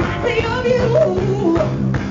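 Soul band playing live, a woman singing a wavering, held melody over electric bass and drums.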